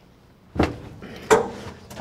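Two thumps, about three-quarters of a second apart, the second with a brief ring.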